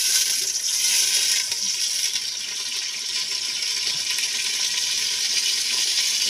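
Steady sizzling of spiced food cooking in an aluminium pot over a wood fire.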